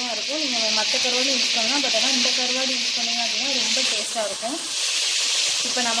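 Chopped onions, tomatoes, green chillies and dry fish sizzling in oil in a metal pot, stirred with a slotted spatula: a steady frying hiss. A voice goes on underneath, pausing briefly between about four and five seconds in.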